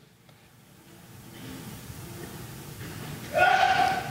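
A person sneezing once, loudly, near the end, with a pitched, voiced 'choo'.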